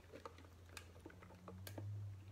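Faint, irregular light clicks and taps of small objects being handled, over a steady low hum.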